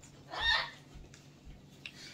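A bird gives one short call, lasting about half a second, soon after the start.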